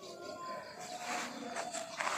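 Faint distant birds calling, thin whistled notes over quiet outdoor background hiss that swells a little about a second in.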